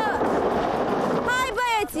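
A wheelbarrow load of white stones tipped out and clattering onto the ground for about the first second, cut off by a shouted "Hai!" near the end.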